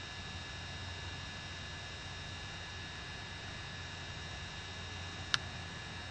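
Steady low electrical hum and hiss with faint high steady tones, the recording's background noise, broken by one short click near the end.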